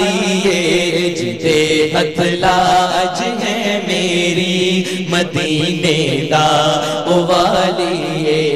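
Two male naat singers singing a Punjabi naat in long, drawn-out melodic lines, with a steady low drone beneath.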